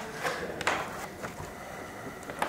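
Quiet room tone in a meeting room, with a few light clicks and taps in the first second and a bit.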